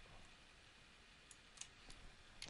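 Near silence with a few faint computer mouse clicks, the last two about one and a half and two seconds in.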